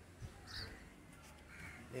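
A bird calling with short harsh caws, about half a second in and again near the end, with brief higher chirps.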